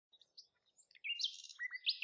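A small songbird chirping in quick, high notes, starting about a second in after near silence.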